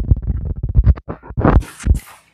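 Knife cutting grilled meat on a wooden board: a quick, irregular run of knocks and scrapes, several a second.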